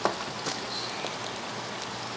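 Steady hiss of running water, with a soft crinkle of plastic fish bags right at the start and again about half a second in.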